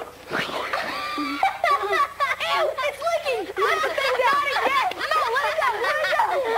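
A sharp gasp, then high-pitched children's voices squealing, giggling and talking over one another with hardly a pause.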